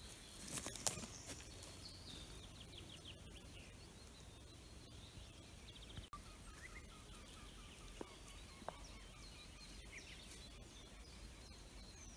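Quiet woodland ambience with faint, distant birdsong: a few short chirping phrases and trills, and a few soft clicks.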